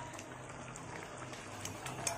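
Pork menudo stew simmering in a wok: a faint, steady bubbling crackle with scattered small pops, over a low steady hum.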